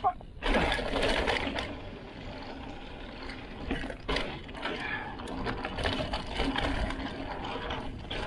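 A mountain bike being ridden along a dirt trail: tyres rolling over dirt and a fast, steady mechanical ticking like a freewheel hub coasting, with wind noise on the camera's microphone. The sound drops out briefly just after the start, then comes back louder.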